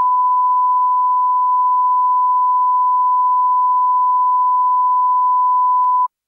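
Broadcast line-up test tone accompanying colour bars: one steady, unwavering pure beep held at a constant level, cutting off abruptly at the very end. It is the test signal put out in place of programme when the live feed has broken down.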